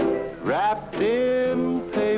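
A man singing a slow country song with band accompaniment, sliding up into a long held note.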